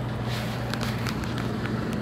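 Steady low hum of rooftop HVAC package units running, with light clicks and rustles from handling and movement close to the microphone.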